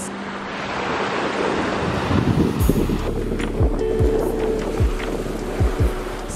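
Small waves washing onto a sandy shore, a steady rushing hiss. About halfway through, background music with a deep kick-drum beat comes in over it.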